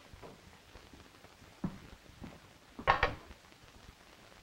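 Knocks and metal clinks of a heavy flat iron being lifted from the stove and handled: a couple of light knocks, then a louder clatter about three seconds in.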